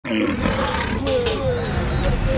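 Channel intro sting: music with a low, gliding roar sound effect.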